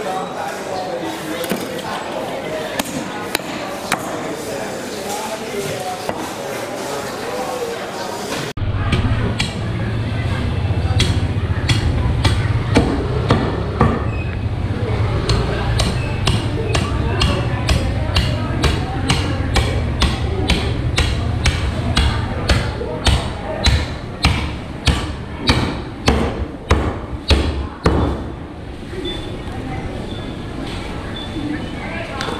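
Butcher's cleaver chopping through a carcass on a wooden chopping block: a long run of sharp chops, coming faster, about two a second, in the last third, over a low steady hum and market chatter. For the first eight seconds only chatter and a few light knife clicks are heard.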